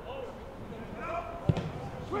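A football struck hard on a free kick, one sharp thud about a second and a half in, with players shouting to each other around it.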